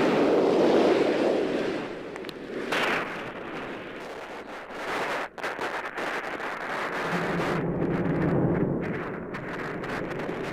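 Space Shuttle launch roar as the main engines ignite and the vehicle lifts off: a loud, dense rushing rumble. It is strongest at first, has a brief sharper burst about three seconds in, then settles to a steady roar.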